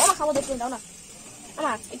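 A voice speaking in two short phrases, one at the start and one near the end, over a faint steady hiss.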